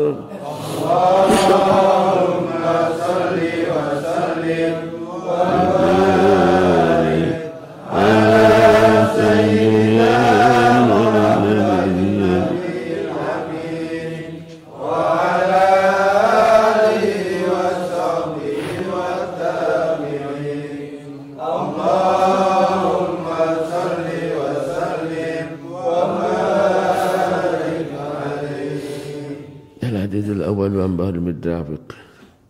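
Men's voices chanting an Arabic sholawat in praise of the Prophet, in drawn-out melodic phrases of a few seconds each, with short breaks between them.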